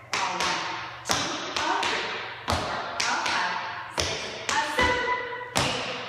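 Tap shoes striking a studio floor in the Tack Annie step of the Shim Sham: brush, touch and stamp sounds in short groups of sharp taps. A single stamp on count eight comes after a short pause near the end.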